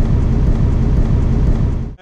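Road and engine rumble heard inside the cab of a moving Ford Transit campervan, a loud, steady low rumble that cuts off suddenly near the end.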